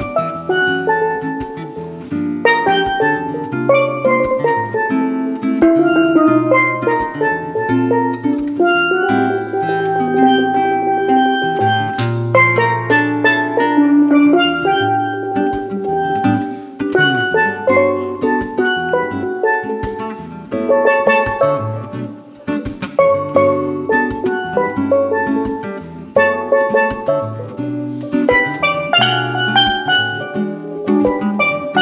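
Live steel pan and acoustic guitar playing a jazz tune together, the steel pan carrying the melody, with a drum kit keeping time.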